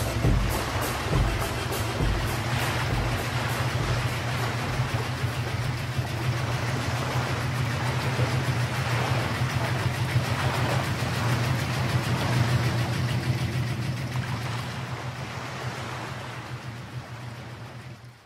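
Fishing boat's engine running steadily under way, with water rushing along the hull; the sound fades out over the last few seconds.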